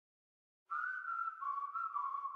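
Silence, then, under a second in, a whistled melody begins: a clear single line that steps gently down in pitch from note to note, opening a recorded pop song.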